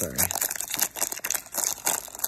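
Foil wrapper of a baseball card pack crinkling as it is pulled open by hand, with irregular crackles throughout.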